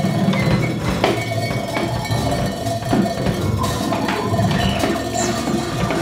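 Free-improvised jazz quintet playing: scattered knocks and taps over a busy low register, with a held mid-pitched tone running through.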